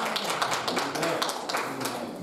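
Small congregation applauding with many separate hand claps, thinning out toward the end.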